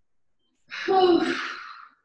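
A person's breathy, voiced gasp or groan of effort lasting about a second, starting a little under a second in and fading away, made while straining through an abs exercise.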